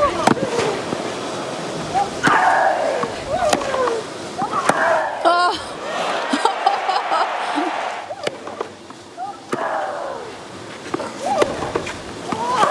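Tennis rally on clay: sharp racket-on-ball strikes about every second, several of them joined by a player's short grunt falling in pitch.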